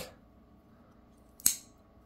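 One sharp click about one and a half seconds in: the blade of a Rough Rider lockback folding knife being opened and snapping into its lock.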